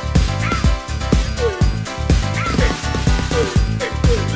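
Instrumental stretch of an upbeat dance-pop song: a steady kick-drum beat at about two beats a second, with a short falling yelp-like sound repeating over it.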